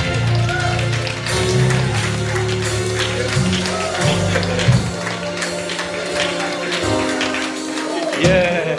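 Church band music: sustained organ chords over a moving bass line, with steady drum or percussion beats for a few seconds and a voice calling out now and then.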